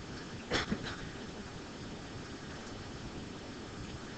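Quiet lecture-room background noise, with one brief short sound about half a second in.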